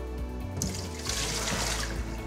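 Water running and trickling, starting about half a second in, over steady background music.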